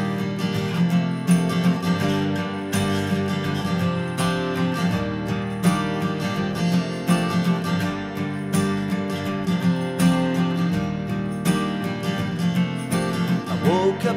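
Acoustic guitar strummed in a steady rhythm through an instrumental break, with no singing.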